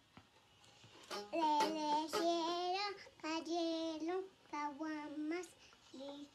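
A young girl singing in a small, high voice, starting about a second in, in short phrases of long held notes with brief pauses between them.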